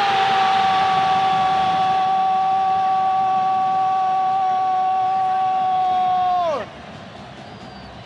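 A TV football commentator's long, drawn-out goal shout, held on one note for about six and a half seconds and falling away at the end, then only faint background noise.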